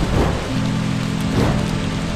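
Explosion sound effect: a rumbling blast that swells again about a second and a half in, under background music holding sustained low notes.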